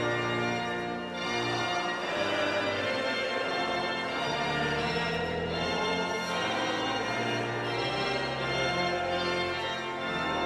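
Church pipe organ playing a hymn of praise in full chords, with a standing congregation singing along.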